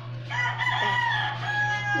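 A rooster crowing: one long call that drops in pitch near the end.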